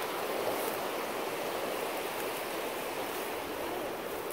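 Shallow mountain stream rushing over boulders and rocks, a steady even rush of water.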